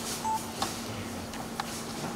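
Camera shutters clicking several times at uneven intervals, with a brief electronic beep near the start, over a faint steady hum.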